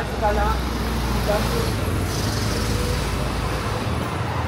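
Road traffic running close by, a steady low engine rumble from passing vehicles, with brief snatches of passers-by talking in the first second or so.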